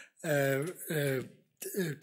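A man's voice making two drawn-out hesitation sounds with falling pitch, then starting a word near the end.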